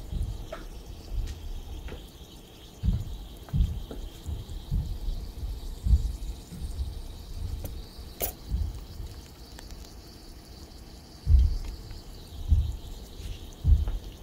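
A small piece of lithium metal reacting on water in a stainless steel pan: a faint, steady fizz as it gives off hydrogen gas, with a few small clicks, under irregular low thumps.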